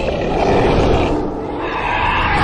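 A dragon roaring in an animated film's sound effects: a loud, rough roar that eases a little past the middle and swells again near the end.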